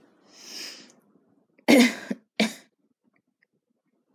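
A person coughing twice in quick succession about two seconds in, after a soft breathy intake of air.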